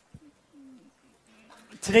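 A lull in a man's talk: a small click, then a faint, brief low hum, before his voice comes back in near the end.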